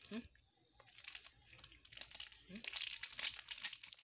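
Raw lettuce leaf being bitten and chewed close to the microphone: a run of quick, crisp crunching crackles that starts about a second in and grows busier toward the end.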